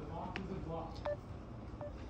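Two short electronic beeps, about a second in and near the end, from a counter terminal such as a keypad or scanner while mail is processed. A few light clicks and faint voices are also heard.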